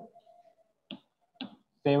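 Two short, sharp clicks about half a second apart: chalk tapping against a chalkboard as numbers are written.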